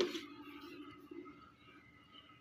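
Near silence: faint room tone, with one faint tap about a second in.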